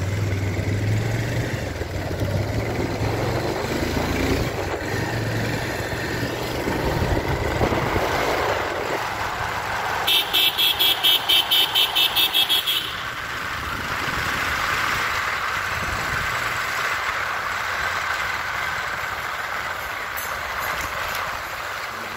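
Steady engine and road noise from a vehicle on the move, with a low engine hum through the first half. About ten seconds in, a loud high-pitched beeping, about four or five beeps a second, goes on for nearly three seconds.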